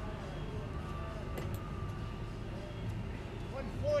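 Low, steady room hum with faint, distant talking and a few small clicks.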